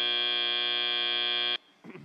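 FIRST Robotics Competition field's end-of-match buzzer, a steady buzz that cuts off suddenly about one and a half seconds in, signalling that the match time has run out. A cough follows just at the end.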